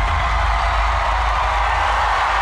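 Talent-show stage audio: a large audience cheering and applauding over loud stage music, a steady wash of crowd noise with a deep bass underneath.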